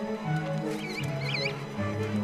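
Sustained music score under a guillemot chick peeping: a short run of high, quickly bending peeps about a second in.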